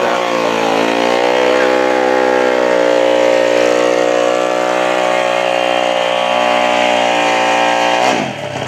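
Drag-racing motorcycle engine held at steady high revs. The pitch dips slightly in the first second, then holds level.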